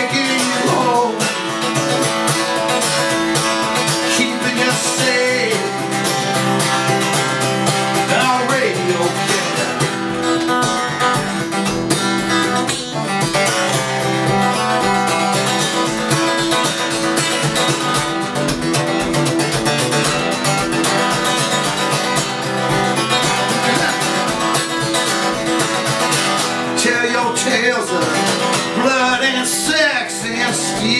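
A solo cutaway acoustic guitar strummed steadily through an instrumental break between sung verses.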